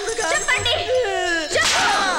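A whip strike cracking about one and a half seconds in, among a person's falling cries, over background music with a low pulsing beat.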